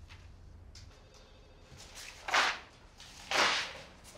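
Pages of a printed paper document being flipped: two brief rustling swishes about a second apart.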